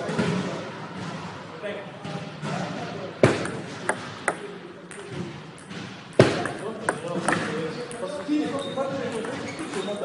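Table tennis ball struck by a bat and bouncing on the table, sharp clicks in two quick runs about three seconds apart, over people's voices in the background.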